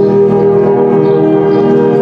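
High school concert band playing held, sustained chords from brass and woodwinds.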